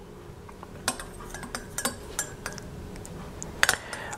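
A metal measuring spoon clinking against a glass tea cup as condensed milk is stirred into black tea: a scatter of light, irregular clinks starting about a second in, the loudest near the end, over a faint steady hum.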